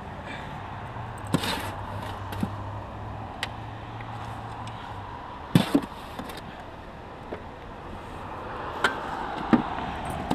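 A spade working composted manure out of a wheelbarrow and around a shrub's roots: short scrapes and sharp knocks of the blade, the loudest a quick double knock about halfway through. A low steady hum sits under the first half and fades out.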